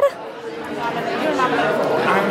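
Background chatter of many people talking at once in a large room, with no single voice in front.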